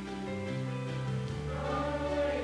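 Choral music: voices holding long sustained notes that move to new chords about once a second.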